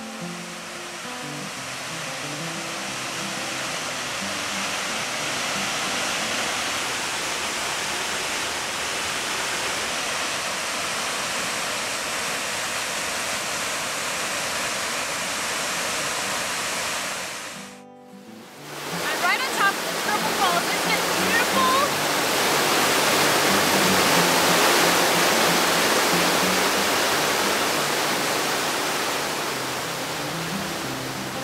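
Steady rushing of a three-stranded waterfall, Triple Falls, with a soft guitar tune faintly beneath it. About 18 seconds in the sound drops out briefly and comes back louder as the rushing of white-water creek rapids.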